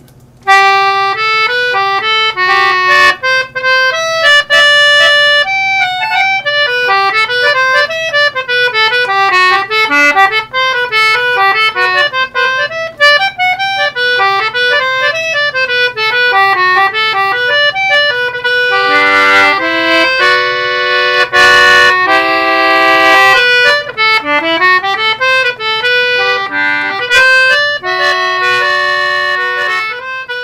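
1923 Wheatstone Aeola 56-key metal-ended tenor-treble English concertina playing a tune of quick running notes, with a stretch of fuller chords a little past the middle.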